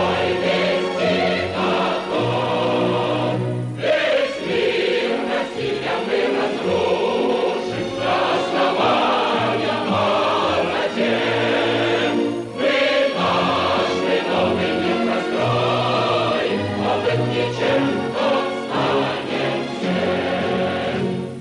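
Choral theme music: a choir singing held notes in long phrases, with short breaks between phrases about four and twelve seconds in, under the opening titles of a TV documentary.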